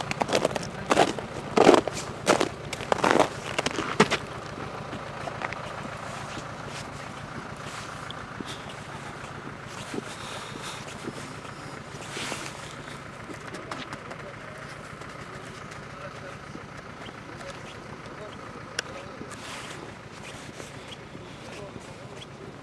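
Steady hum of a vehicle moving along a road, after a cluster of short, louder sounds in the first four seconds.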